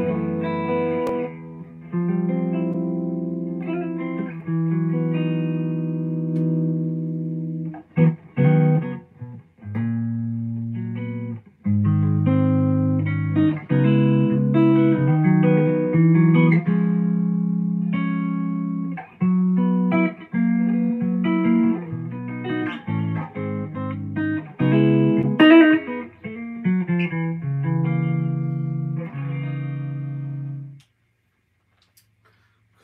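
Gibson Les Paul electric guitar playing chords, each held ringing for a second or two, with short runs of quicker strums and picked notes between them, about a third of the way through and again near the end.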